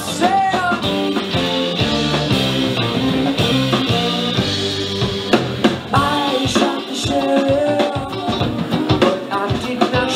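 Live band playing a reggae-rhythm rock song: electric guitars, bass, keyboard and drum kit, with regular drum hits. A male lead voice sings lines near the start and again about two-thirds of the way in.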